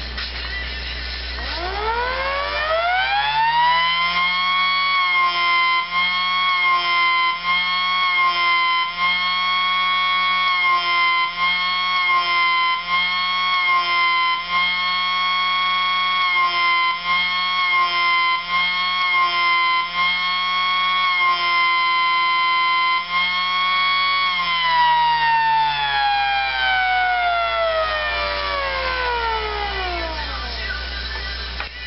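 Homemade ThunderCane 1003CS electric siren winding up over a couple of seconds to a loud steady howl, its tone wavering slightly about once a second. After about twenty seconds it winds down in a long falling glide.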